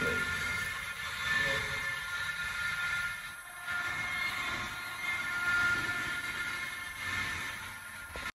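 A heavy transformer rolling on machine skates across a concrete floor: the skates' rollers give a steady high whine of several tones over a low rumble.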